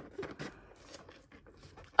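Small cardboard box being worked open by hands in nitrile gloves, the inner tray sliding out of its sleeve: faint scraping and rubbing with scattered small clicks.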